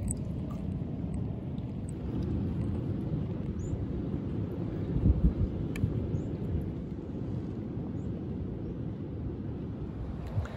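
Low, steady outdoor rumble on a rocky shore, a little stronger about five seconds in, with a few faint high chirps.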